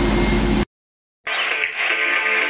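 A pressure washer's pump running and its water jet spraying, with a steady hum, cut off abruptly just over half a second in. After a brief silence, background music starts.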